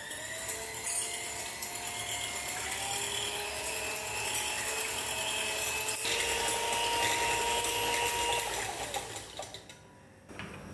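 Electric hand mixer running, its twin wire beaters whisking a runny batter in a glass bowl: a steady motor whine that shifts pitch about six seconds in, then winds down and stops near the end.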